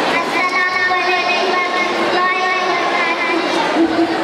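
A child's high voice through a microphone and hall loudspeakers, drawn out in long held tones, over a steady din of crowd noise.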